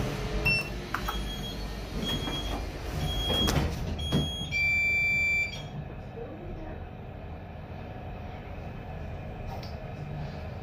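EM Services/Shenyang Brilliant (BLT) passenger lift: several short high beeps and knocks in the first four seconds, then a steady electronic buzzer tone for about a second. After that comes the low steady hum of the car setting off downward.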